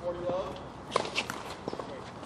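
Tennis ball struck by rackets during a rally: sharp knocks about a second in and again shortly after, with a brief voice near the start.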